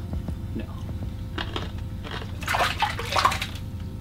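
Water splashing and dripping as a freshly caught crappie is handled over an ice-fishing hole, loudest for about a second near the end, over a steady low hum.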